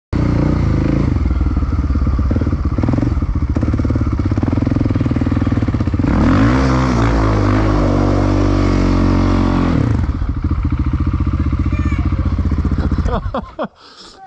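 Sport quad (ATV) engine running, revved hard about six seconds in with its pitch climbing steeply and held high for about four seconds while the wheels spin in snow, then dropping back. The engine shuts off near the end.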